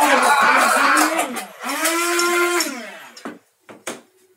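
Men's voices in a loud, wordless drawn-out cheer, ending in one long held low note. Two short knocks follow near the end.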